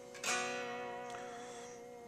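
Fender Jaguar electric guitar: a chord strummed once about a quarter second in, left ringing and slowly fading.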